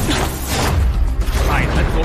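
Battle sound effects for an animated fight: a deep, continuous rumble with a rushing noise over it.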